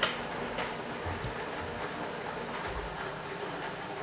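Lottery drawing machine mixing numbered balls: a steady rattle with a few faint ticks.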